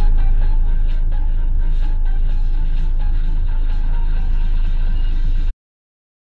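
Low road and engine rumble inside a moving car's cabin, with music playing over it. The sound cuts off abruptly into silence about five and a half seconds in.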